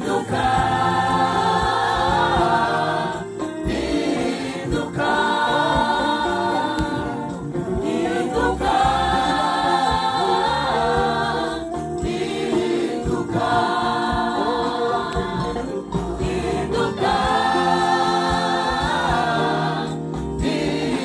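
Rwandan gospel choir singing in full voice in phrases of about four seconds, with short breaks between phrases and a steady low bass underneath.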